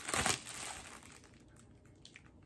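Packaging crinkling and rustling as a padded mailer holding CDs is handled and opened, loudest in the first half second, then dying down to faint scattered crinkles.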